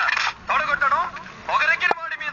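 Speech only: a person talking in short phrases with brief pauses, and no other sound standing out.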